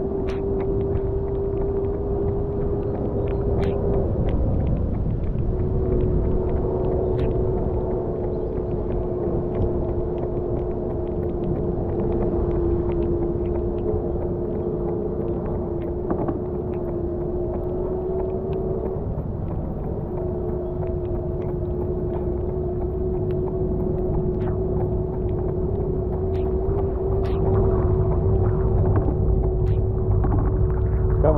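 Steady motor whine from a vehicle moving at running pace, over a low rumble of wheels on the road and wind on the microphone; the whine cuts out twice briefly and drifts a little in pitch.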